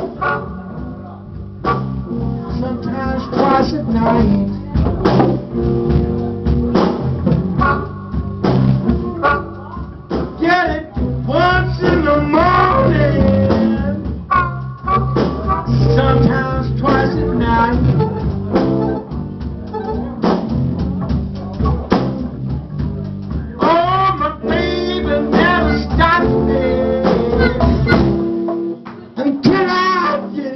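Live band backing a singer, with a steady low bass line under a sung melody. The lowest notes drop out near the end.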